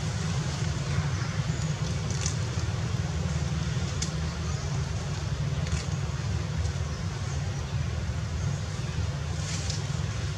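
Steady low rumble and hiss of outdoor background noise, with a few faint, brief high-pitched ticks.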